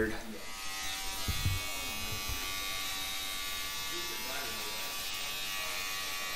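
Handheld electric beard trimmer switched on and buzzing steadily as it is worked into a thick full beard.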